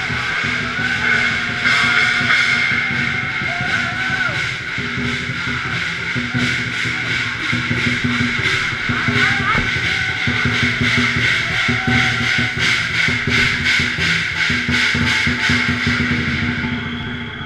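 Chinese procession percussion: hand-held gongs struck over a drum, their ringing held throughout. From about nine seconds in, the strikes fall into a fast, even beat.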